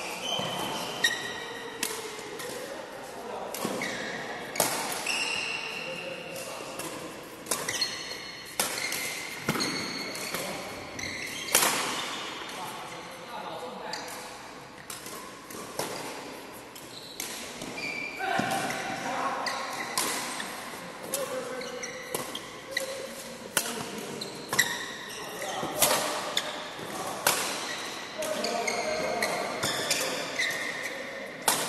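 Badminton rackets striking a shuttlecock in sharp smacks, many times at irregular intervals during rallies, echoing in a large hall.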